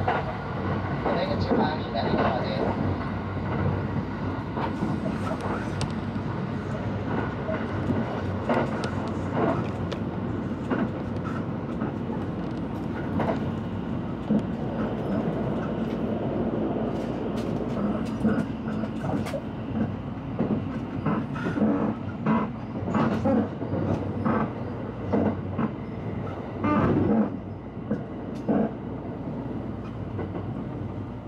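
Limited Express Shirasagi electric train running at speed, heard from inside the passenger car: a steady rumble from the running gear with frequent sharp clicks from the wheels over rail joints and points, more of them in the second half.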